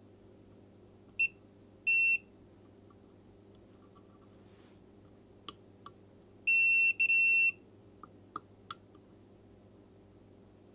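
Multimeter continuity beeper sounding as test probes touch pads on a circuit board: a short beep about a second in, another just after two seconds, then a longer beep broken once around seven seconds, with a few light clicks of probe tips in between. The beeps signal continuity between the probed points while the power button is checked for a short.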